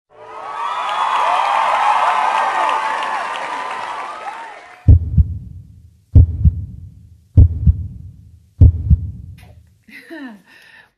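Crowd cheering that fades out after about five seconds, followed by four loud, low double thumps like a heartbeat, about a second and a quarter apart: intro sound effects.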